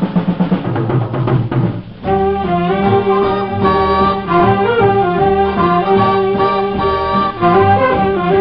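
Swing-era dance orchestra playing an instrumental. For about the first two seconds drums drive a rhythmic passage. After a brief dip the band moves into held chords on brass and reeds.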